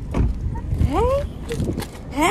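Wind buffeting a phone's microphone, a heavy low rumble, with young women's voices calling out in rising squeals about a second in.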